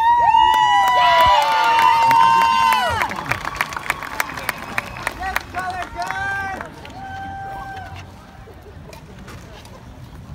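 Spectators cheering: several high-pitched whoops and shouts that swoop and hold for about three seconds, then shorter scattered shouts that die away around seven seconds in.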